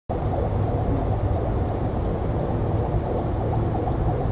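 Steady low rumble of wind buffeting the camera microphone outdoors. A faint run of quick, high chirps, likely a bird, comes about two seconds in and lasts just over a second.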